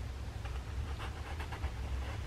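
Faint scrapes and light taps of a cylindrical cardboard cookie box being turned over in the hands as its child-proof lid is worked at, a few small clicks over a steady low hum.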